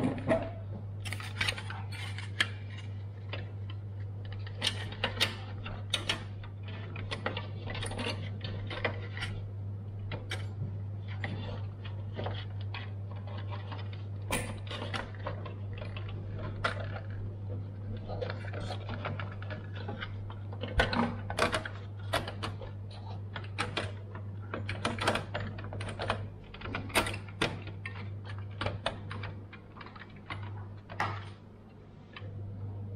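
Irregular plastic and metal clicks, taps and clatter as a CPU heatsink with its fan and plastic air shroud is handled and seated over the processor in an open Dell Optiplex 3020 SFF case. A steady low hum runs underneath.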